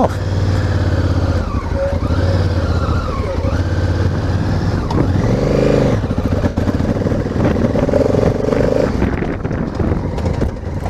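Honda Africa Twin's parallel-twin engine heard from the rider's seat, pulling away on a dirt track. The revs rise and fall several times, with one clear swell and drop about halfway through.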